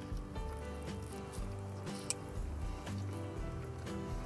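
Quiet background music with steady held notes, under faint wet chewing sounds of a mouthful of burrito.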